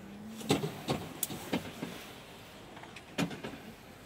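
A few scattered sharp knocks and clicks, irregularly spaced, the loudest a little after three seconds, with a short low hum near the start.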